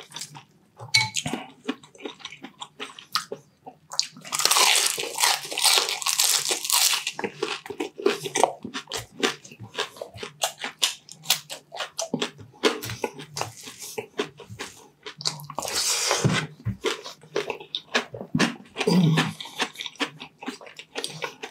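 Close-miked chewing and loud crunching of crispy deep-fried chicharon bulaklak (pork mesentery), with many quick crackling bites throughout and the densest, loudest crunching about four seconds in and again around sixteen seconds.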